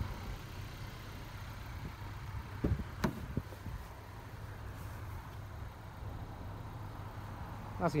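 A car door being opened: a couple of sharp clicks from the handle and latch about three seconds in, with a soft thump, over a steady low hum.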